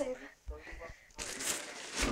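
Plastic bag wrapping crinkling and rustling as a boxed fog machine is handled, starting a little over a second in after a few soft low bumps.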